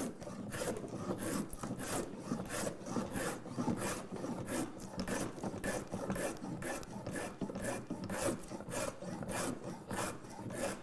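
Plough plane cutting a groove in a sapele board, in short quick strokes of about two to three a second, each a brief scrape of the iron taking a shaving. The cut is being worked backwards from the end, against the grain.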